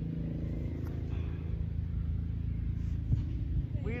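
Steady low mechanical drone, like an engine or motor running nearby, with a couple of faint knocks near the end.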